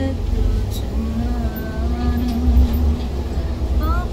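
Steady low rumble of a moving bus heard from inside the cabin, with a person's voice holding one long wavering note for about two seconds in the middle.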